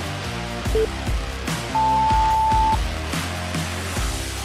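Workout interval timer beeping over background music with a steady beat: one short countdown beep about a second in, then a longer, higher beep lasting about a second that marks the start of the next exercise interval.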